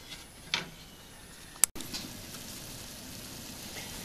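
Sugar-and-vinegar pickling liquid in a stainless steel pot: faint stirring, a sharp click about a second and a half in, then a steady low hiss of the liquid boiling hard.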